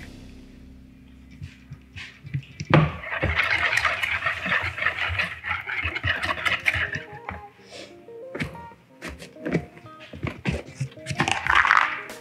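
Wire whisk beating an egg, evaporated-milk and melted-butter mixture in a mixing bowl. A rapid clattering scrape of wire on the bowl starts with a knock about three seconds in, runs for about four seconds, and comes again briefly near the end. Background music plays underneath.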